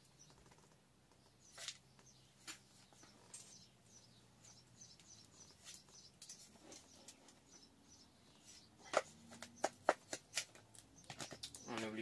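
A hand trowel scooping a sandy potting mix into a pot. Faint scattered ticks give way, from about nine seconds in, to a quick run of sharp scrapes and knocks as the trowel works the soil against the pot.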